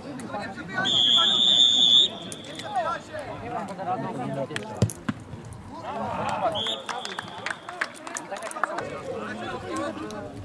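Referee's whistle blown in one long, loud blast about a second in, signalling the free kick to be taken, followed a few seconds later by a single sharp kick of the football and a second, shorter whistle blast. Players and spectators are shouting throughout.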